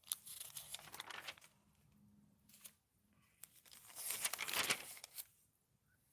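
Glossy magazine pages being turned by hand, rustling and crinkling in two bursts, the second, about three and a half seconds in, the louder.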